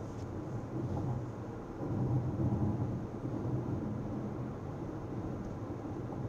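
Car driving along a road, heard from inside the cabin: a steady low rumble of engine and tyre noise that swells a little about two seconds in.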